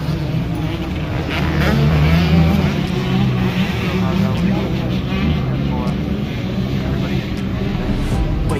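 Dirt bike engines running in a motocross paddock, a steady engine drone that swells about two seconds in, with people talking over it.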